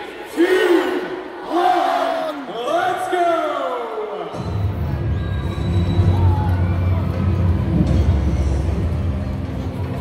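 A crowd shouting a countdown together over a PA, three loud calls. About four seconds in, deep, droning music from the reveal video starts suddenly and carries on.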